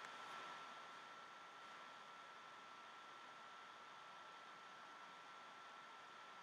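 Faint, steady hiss of a thin stream of tap water running from a bathroom faucet into the sink, close to silence.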